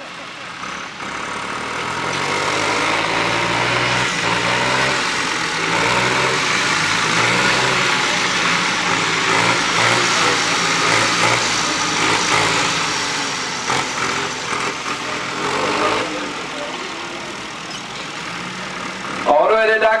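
Farm tractor engines running hard in a race, the engine note stepping up and down in pitch as they accelerate. The sound builds over the first couple of seconds and falls away after about sixteen seconds.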